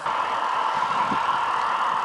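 A dense chorus of many frogs croaking together, merging into one steady, continuous hum.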